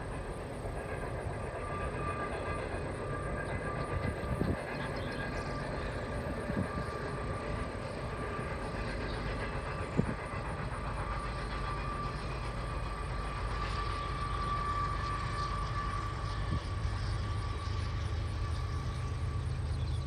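BNSF coal train's hopper cars rolling past: a steady rumble of steel wheels on rail with a thin, steady high whine over it and an occasional sharp knock, the loudest about halfway through.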